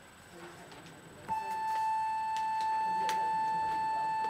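School's electronic class bell: one steady, unwavering tone that starts just over a second in and is held for about three seconds, signalling the end of the class period.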